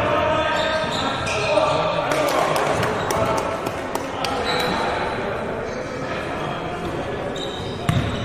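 Basketball bouncing on a hardwood gym floor during play, with players' voices in a large hall.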